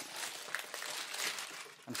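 Greaseproof baking paper rustling and crinkling irregularly as it is handled around a baked brownie on a wire rack.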